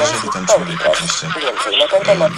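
Speech only: a newsreader reading a Polish radio news bulletin without pause.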